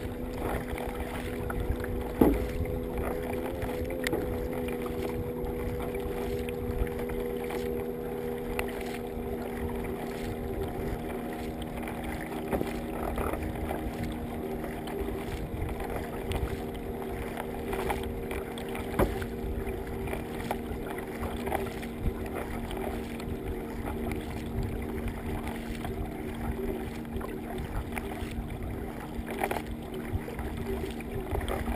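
Water rushing and splashing against the bow of a racing kayak under way, heard up close at the hull, with a steady low hum underneath and an occasional knock.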